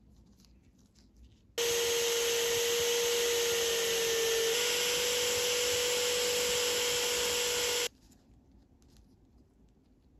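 Drill held in a bench vise starts up with a steady whine. It spins a black abrasive wheel against a small brass T-handled screw for about six seconds, rising slightly in pitch halfway through, then cuts off suddenly. Faint handling clicks come before and after.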